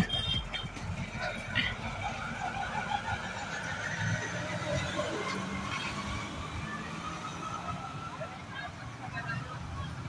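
Roadside street ambience: a steady low traffic rumble with faint voices, after a short laugh at the start.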